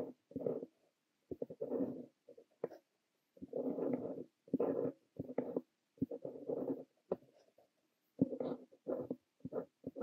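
Montblanc Le Petit Prince fountain pen with a fine nib scratching across notebook paper while writing Korean characters: short bursts of pen strokes broken by brief pauses between characters.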